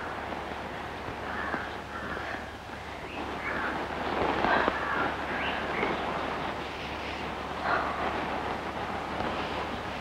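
Steady hiss and low hum of an old film soundtrack, with faint breathy, unvoiced sounds from a person every second or so.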